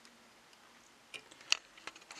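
Quiet room tone, then a few light clicks of handling in the second half, the sharpest about one and a half seconds in.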